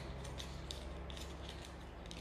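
Faint handling noise from small cosmetic packaging being worked open by hand, with a few light ticks and crinkles.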